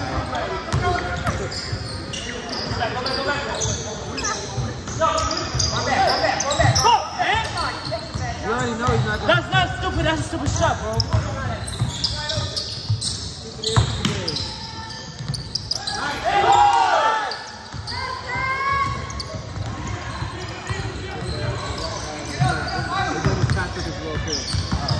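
Basketball dribbled on a hardwood gym floor during a pickup game, with players shouting and calling to each other, all echoing in a large hall.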